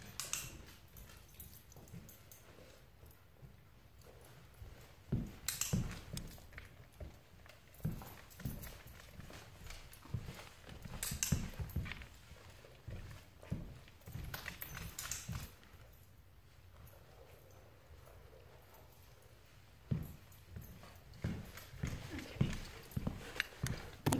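Footsteps of a person and a German Shepherd's claws on a hardwood floor, heard as irregular thumps and sharp taps that come in clusters.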